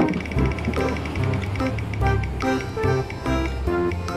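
Digital spin-wheel ticking over background music: rapid clicks for about two seconds that then slow and thin out as the wheel winds down.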